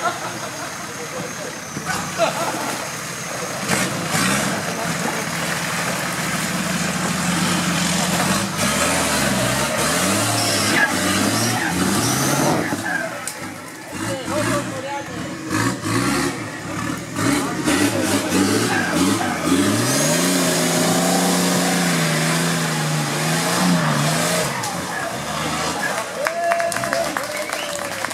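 Nissan Patrol 4x4's engine revving hard under load as it claws up a steep muddy slope, the revs surging up and down again and again, then held high for a few seconds near the top. Spectators' voices, and near the end clapping, sound over it.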